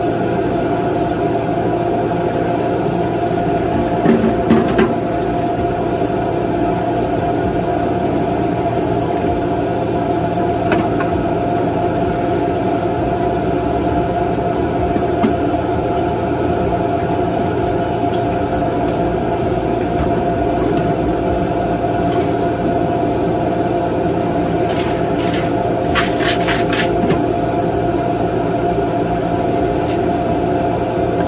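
Steady, loud machine hum with a fixed tone, engine-like and echoing in the food trailer's metal interior, from the trailer's running equipment. A few light knocks and clatters of containers being handled sound over it, about four seconds in and again near the end.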